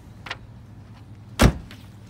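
A station wagon's rear hatch shut with one loud thud about one and a half seconds in, after a light knock just before.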